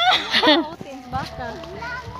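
Speech: a young child's high-pitched voice chattering, with bursts near the start and again in the second half.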